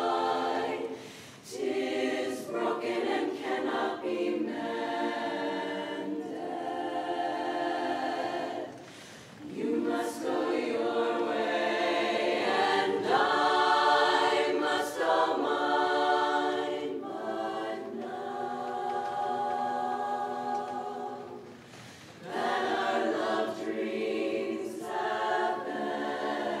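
Women's barbershop chorus singing a cappella in close four-part harmony: long held chords in phrases, with brief breaths between phrases about a second in, around nine seconds and around twenty-two seconds.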